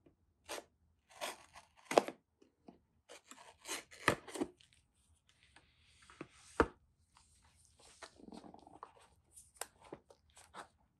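Handling of a smartphone's cardboard retail box: a knife slitting the paper seal stickers, then the box turned over and its lid opened, with crackling paper and card, scrapes and a few sharp clicks.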